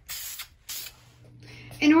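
Aerosol can of engine enamel spraying in two short hisses, the first about half a second long and the second shorter, as a top coat goes onto a painted coffee canister.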